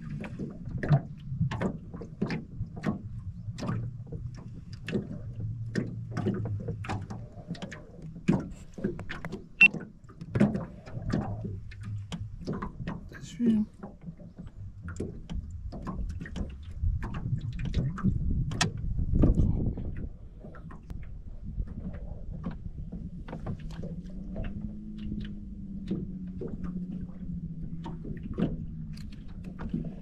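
Scattered clicks and knocks from gear handled aboard a small fishing boat, over a steady low hum. A faint steady tone joins in about two-thirds of the way through.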